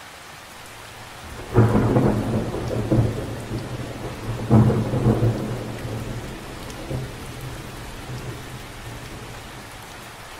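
Steady rain falling, with a sudden clap of thunder about one and a half seconds in and a second about three seconds later, the rumble dying away over the following seconds.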